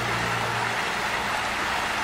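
A steady, even hiss, with a low hum underneath that stops just under a second in.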